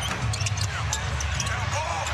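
A basketball being dribbled on a hardwood court, repeated bounces over the steady murmur of an arena crowd.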